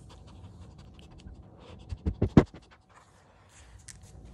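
A small dog panting right at the microphone, with a quick run of three or four loud knocks about two seconds in.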